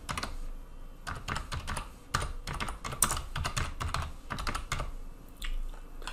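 Typing on a computer keyboard: a run of quick, uneven keystrokes as a short name is typed into a text field.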